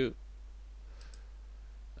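Two faint computer mouse clicks close together about a second in, over a steady low electrical hum.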